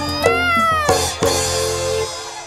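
Joged bumbung bamboo gamelan music with sharp drum strikes, and a single high, meow-like cry that rises and falls in pitch about a quarter of a second in.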